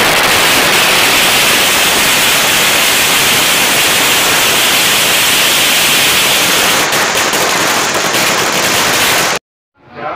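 A long string of firecrackers bursting in rapid succession, so dense that the bangs merge into one loud, continuous crackle. It cuts off abruptly just before the end.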